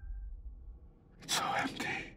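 A low rumble fades away to near silence, then a man whispers a few breathy words in two short bursts over the second half.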